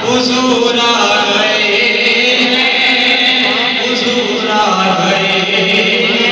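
A man's voice chanting devotional Islamic verses (naat recitation) into a microphone, holding long, drawn-out notes that glide between pitches.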